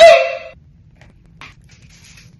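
A short, high-pitched yelp-like cry, about half a second long, that stops abruptly, followed by faint room tone with one faint tick.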